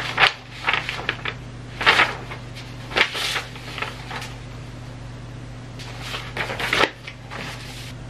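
Sheets of paper rustling as they are handled and turned over, in several short bursts with a longer spell near the end, over a steady low hum.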